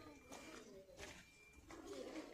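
Near silence with faint, low bird cooing repeated several times in the background.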